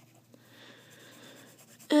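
Graphite pencil shading on paper, a faint, steady scratch as the lead is worked over the paper to darken an area.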